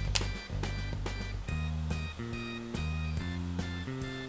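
Background music of plucked notes over a stepping bass line, with a light beat. A single sharp click sounds just after the start.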